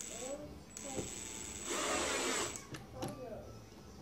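Cordless drill/driver driving a hinge screw into a plastic cabinet dowel: the motor runs for about two seconds, louder in the second half, then winds down. The screw is only being started, to be finished by hand so the plastic dowel is not stripped.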